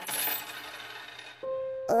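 A handful of coins clattering down onto a table, with a bright metallic ring that fades within about half a second.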